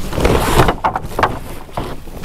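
Heavy black plastic tarp being pulled and shifted over a sawmill, rustling and crackling irregularly.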